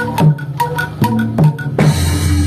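Live Javanese dance accompaniment led by a kendang, a double-headed hand drum, struck in a steady rhythm of about two to three strokes a second, with higher pitched struck notes riding on each beat.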